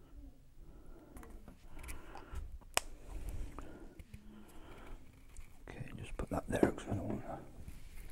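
A man whispering under his breath, with faint handling knocks and one sharp click a little under three seconds in.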